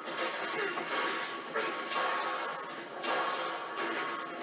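Soundtrack of a TV action fight scene playing: score music with crashes and hits, swelling suddenly about one and a half and three seconds in.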